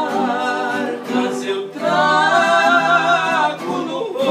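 Two men singing a sertanejo song together over two strummed acoustic guitars. About two seconds in they hold a long, louder note.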